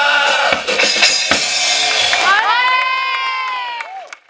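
A carnival singing group's song with guitars ends about half a second in, followed by drum beats and a crowd cheering. From about halfway, one long held high note swells and then sinks away, and the sound cuts off at the end.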